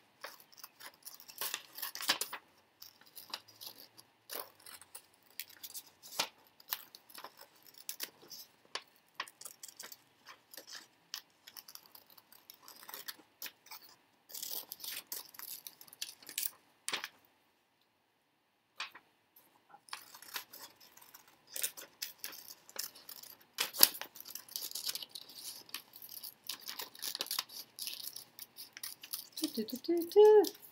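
Paper cutouts being handled and shuffled: rustling and crinkling with light clicks and taps, pausing briefly a little past halfway.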